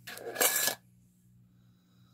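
A short, sharp sniff through the nose, about half a second long and ending near the start, taken to smell a jar candle's scent.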